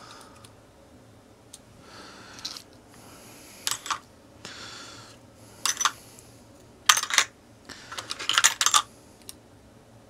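Small metal shim washers clinking and rattling as they are sorted by hand, in a few short clusters of clicks, the busiest near the end.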